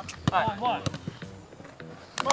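A football being struck and received on a grass pitch in a quick passing drill: several short, sharp thuds of the ball. A brief voice-like call sounds in the first second.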